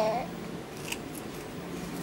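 A toddler's babbling voice trails off with a falling pitch just after the start, followed by a few faint, sharp little clicks.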